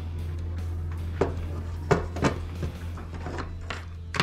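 A few sharp clicks and light knocks of small hard plastic and metal electronics parts being handled on a countertop, the loudest about two seconds in, over a steady low hum.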